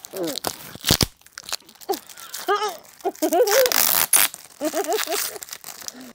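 Clear packing tape being pulled off the roll and torn in a series of noisy rips, very sticky tape, with a sharp knock about a second in.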